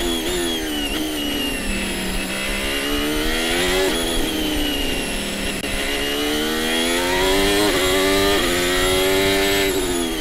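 Onboard sound of a Haas Formula 1 car's Ferrari 1.6-litre turbocharged V6 hybrid engine at racing speed, heard from the cockpit camera. The engine note falls under braking, picks up, drops sharply about four seconds in, then climbs through the gears with short steps at the upshifts and drops again near the end.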